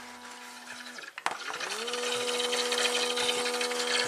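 Small portable smoke machine's electric air pump: its low hum cuts out with a click about a second in, then it spins up to a steady, higher hum under a hiss of air that grows louder as it pumps into the sealed headlight housing.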